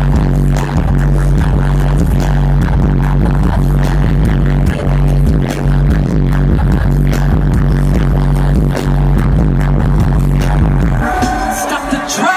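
Loud live concert music over a stadium PA, picked up by a phone in the crowd: a heavy, steady bass with a beat running under it. The bass drops out about a second before the end.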